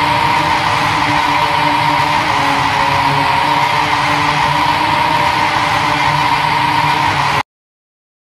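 The closing seconds of a symphonic black metal track: a loud, steady, dense wash of distorted sound with held tones, which cuts off abruptly about seven and a half seconds in, leaving silence as the track ends.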